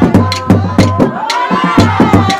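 Live Somali Bantu sharara music: drums struck about twice a second in a steady beat, with a high singing voice drawing a long line that rises and falls in the second half.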